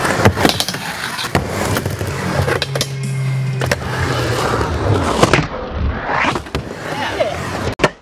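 Skateboard wheels rolling on a mini ramp, with repeated sharp clacks of the board and trucks against the ramp and its coping. The sound cuts off suddenly near the end.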